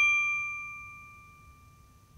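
A single bright, bell-like ding sound effect from a logo intro, struck once and ringing out, fading away over about a second and a half.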